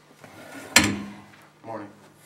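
A chair being moved up to the hearing table and knocking against it, picked up by the table microphone as one loud knock a little under a second in. A shorter, softer sound follows near the end.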